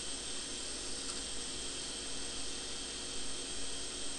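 Steady background hiss with a few faint steady tones: the recording's noise floor, with no distinct sound event.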